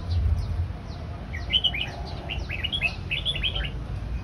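Caged songbirds chirping: several quick runs of short, high, falling chirps starting about a second and a half in, over a low background rumble.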